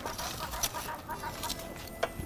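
Metal grill tongs clicking and scraping against the grill grate and coals as charred onions are lifted out of the fire, a few sharp clicks over a low background.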